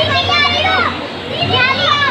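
High-pitched children's voices calling out twice over a steady background noise.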